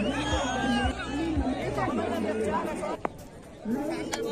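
Spectators chattering, several voices overlapping, fading for a moment a little over halfway through. There is a single sharp knock about three seconds in.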